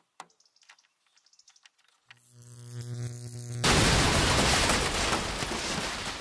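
Added sound-effect gag of an electrical device blowing up: a faint click, then a buzzing electrical hum that swells for about a second and a half, then a loud explosion that slowly dies away.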